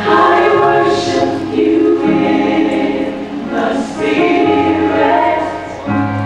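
Gospel song with a choir singing long held phrases over sustained low chords, the voices swelling at the start and again partway through.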